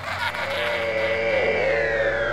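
Eerie intro sound design for a horror title sequence: several held electronic tones that slide down in pitch from about halfway through.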